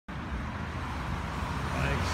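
Road traffic: cars passing on the road, a steady low rumble with tyre hiss that grows slightly louder toward the end.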